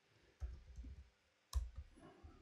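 Faint computer keyboard typing: a few soft low taps, then one sharper key click near the end as the Enter key is pressed.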